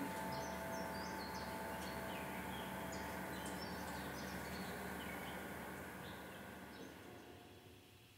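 Faint bird chirps, short and scattered, over a soft hiss and a faint lingering held note, all fading out together to silence near the end.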